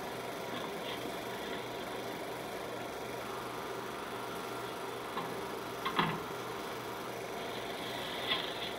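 A 16mm film projector running, its mechanism giving a steady whirring clatter, with a brief knock about six seconds in.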